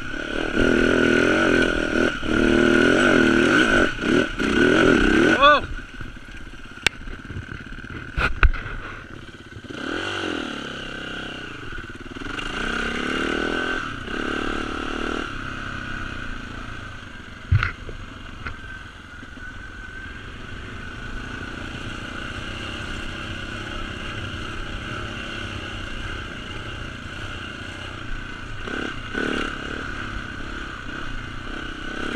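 Dirt bike engine, heard from on the bike, revving hard under load on a hill climb for the first five seconds. The throttle then closes and the pitch falls away. It revs up again briefly, with a few sharp knocks along the way, then runs on at lighter throttle.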